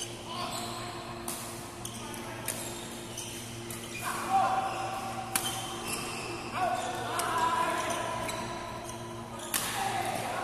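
Badminton rackets striking a shuttlecock during a rally: several sharp cracks a second or two apart, ringing in a large hall, with voices calling in the background.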